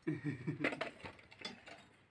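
Rope running over a well pulley as buckets are lowered down the well, giving a run of irregular clicks and creaks.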